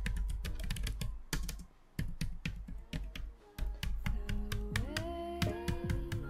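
Fast typing on a Logitech K380 wireless keyboard's round low-profile keys: a quick run of clicky keystrokes, with short pauses about two and three and a half seconds in. Soft background music comes in over the second half.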